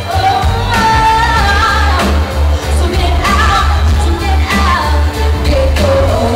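Live pop song: a woman sings lead into a microphone, holding and bending notes, over backing music with a heavy, pulsing bass line, amplified through the PA in a large hall.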